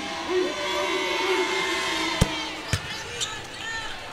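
A basketball bounced twice on a hardwood court, about half a second apart, as a free-throw shooter dribbles before her shot. Arena crowd murmur with scattered voices runs underneath.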